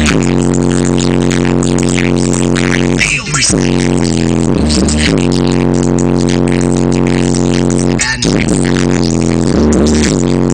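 Loud music through a car sound system with three 15-inch Kicker Comp subwoofers in the trunk: a held, droning tone over a deep bass line, breaking off briefly twice.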